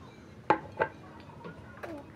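Two sharp clinks of a dish, about a third of a second apart, each with a brief ring.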